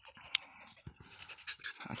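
A Mountain Cur dog panting quietly, with one brief sharp click about a third of a second in.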